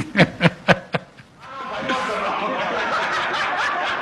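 A man laughing in a few short bursts, followed about a second and a half in by a room of people laughing together steadily.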